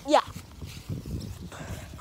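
A child's high, rising "yeah" at the start, then footsteps on grass with the handling noise of a phone carried while walking: soft, irregular low thuds.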